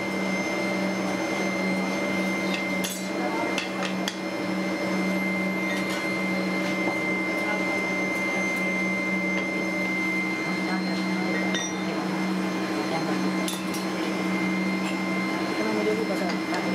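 Steady drone of foundry machinery, with a few scattered sharp knocks as moulding sand is rammed into a steel flask by hand.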